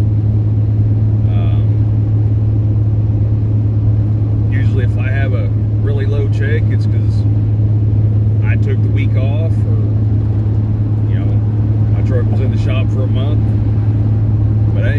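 Steady low drone of a semi truck's diesel engine and road noise heard from inside the cab while driving.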